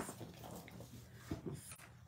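Faint handling sounds of a clear plastic stamp case and its rubber stamp sheet: a few soft, short clicks and rustles.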